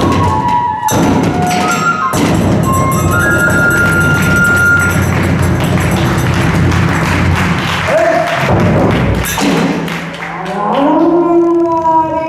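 Kagura festival music: a large taiko drum struck in a fast, dense beat with tebyōshi hand cymbals and held bamboo-flute notes. Near the end the playing drops back and a chanted vocal line begins.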